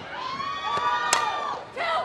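Many voices of fans and players yelling and cheering together, with a single sharp crack about a second in as the softball bat hits the ball.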